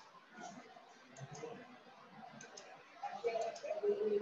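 A computer mouse clicking several times, some clicks in quick pairs, as the image viewer is advanced; a faint voice is heard under it near the end.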